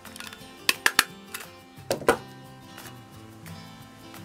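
A desk stapler being pressed through two strips of coloured card: sharp clicks about a second in and another about two seconds in, over background music.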